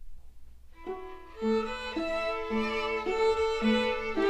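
A string orchestra starts playing about a second in, at a moderate, steady pulse. The violins play a melody of short, even notes over held notes and plucked low strings.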